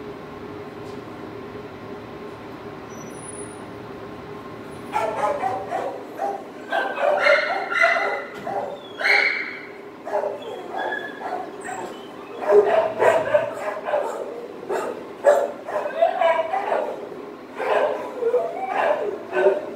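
Other dogs in the shelter's kennels barking, yipping and whining from about five seconds in, in repeated irregular bursts over a steady hum.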